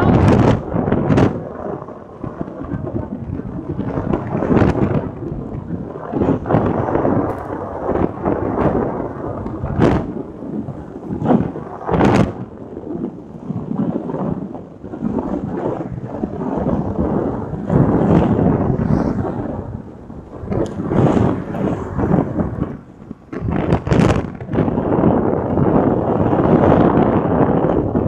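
Wind blasting the microphone of a camera carried in the open at road speed: a loud, rumbling roar that swells and drops irregularly, with frequent sharp buffeting pops.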